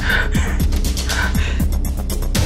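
A woman gasping twice in distress over dramatic background music with a steady beat.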